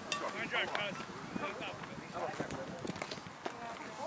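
Faint, distant voices of softball players and onlookers calling out now and then, over a steady outdoor background hiss.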